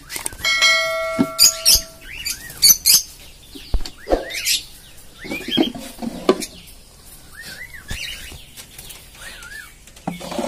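Caged pet birds chirping repeatedly in short calls. Early on, a ringing chime sounds for about a second and a half. A few knocks come from the plywood nest box being handled.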